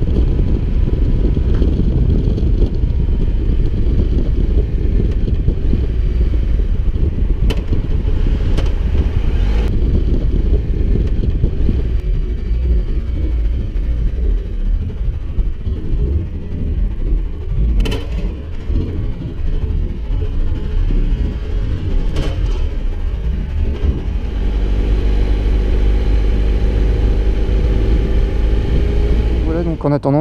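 Triumph Tiger Explorer three-cylinder motorcycle on the move, with heavy wind buffeting on the helmet-camera microphone over the engine, and a few sharp clicks. The bike has a gearbox fault: on a downshift it jumps from third into neutral. A steadier pitched engine note comes through near the end.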